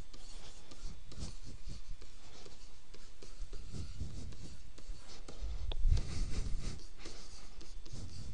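A stylus writing on a tablet screen: a run of short scratching strokes as a line of handwriting is written, a little louder past the middle.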